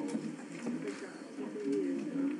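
Indistinct background chatter: several voices talking at once at a distance, with no single speaker standing out.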